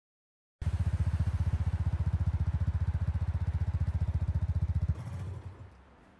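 Motorcycle engine running at a steady idle, a fast, even low throb that starts abruptly just over half a second in and cuts off about five seconds in, then dies away.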